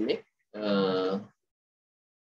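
A man's voice: a word ends, then one drawn-out, held syllable follows for under a second, then silence.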